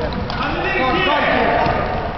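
Players calling and shouting during an indoor futsal game, over the knocking of running feet and the ball on the hard court.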